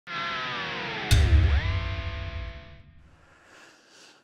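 Electric guitar intro sting: a held chord that dives steeply in pitch and swoops back up, with a heavy low hit about a second in, then fades out by about three seconds.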